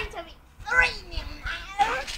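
Children's voices, talking in short bursts with the words unclear.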